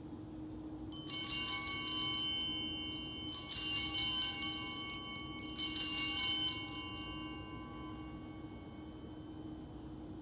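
Altar bells rung three times. Each ring is a quick cluster of strikes on small bright bells that rings on and fades, marking the elevation of the consecrated host at Mass.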